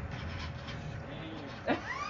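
Low steady rumble with a faint hum, then near the end a person's voice rising into a laugh.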